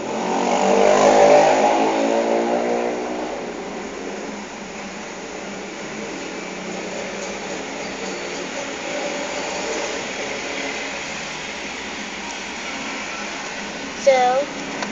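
A motor vehicle's engine goes by: loudest about a second in, then fading over the next few seconds. A steady low hum runs underneath.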